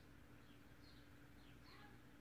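Near silence: room tone with a faint steady hum and a few faint, high, falling bird chirps, one about a second in and a small cluster around a second and a half in.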